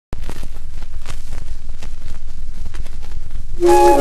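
Surface noise of a 78 rpm shellac record playing its lead-in groove: a steady hiss with a low rumble and a scatter of crackles and clicks. The dance orchestra's music comes in about three and a half seconds in.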